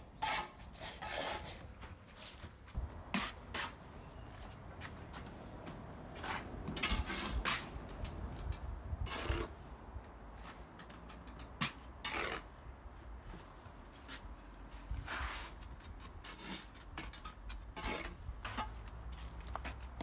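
Bricklaying: a steel trowel scraping and spreading mortar on a brick wall, with bricks being set, in scattered short scrapes and taps.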